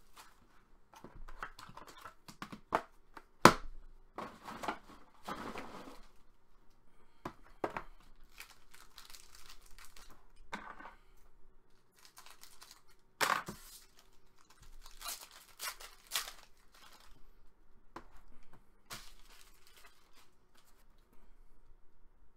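Trading-card packaging being handled and opened by hand: crinkling and tearing of a foil pack wrapper, scissors cutting it open, and scattered sharp clicks and taps, the loudest about three and a half seconds in.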